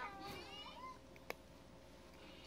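A cat meowing faintly, one wavering call in the first second, followed by a single sharp click.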